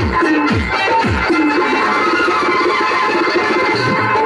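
Loud Indian dance song playing. For about the first second, falling electronic drum sweeps come roughly twice a second, then the instrumental melody carries on.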